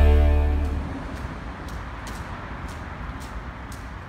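Rock guitar music fading out in the first second, then footsteps on a wet towpath, about two a second, over steady outdoor background noise.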